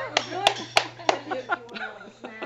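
People laughing, fading off, with a few sharp hand claps spaced out through it.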